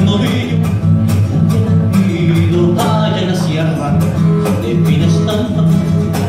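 A band playing an instrumental passage of a sanjuanero, a traditional Colombian rhythm, with plucked strings over a steady percussive beat.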